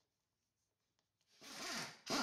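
Near silence, then about one and a half seconds in a short ripping rasp of duct tape being pulled off the roll.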